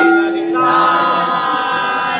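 Devotional aarti singing by a group of voices, opening on a long held note, over a fast, steady ringing rhythm of small bells.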